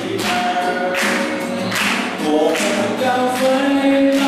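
A man singing a Mandarin song to his own acoustic guitar, holding long notes over steadily strummed chords.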